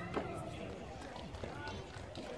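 A tennis racket strikes a ball once, a short sharp pop just after the start, over background voices talking.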